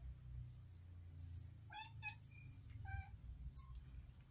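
Siamese cat in heat giving two short meows, about two seconds in and again a second later.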